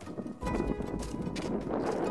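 Small fixed-wing survey drone belly-landing on the ice sheet: a sudden rough scraping and skidding begins about half a second in as it touches down and slides across the frozen surface.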